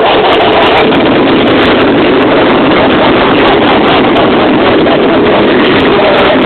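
Fireworks display: a loud, continuous rumble with crackling, overloading the camcorder microphone.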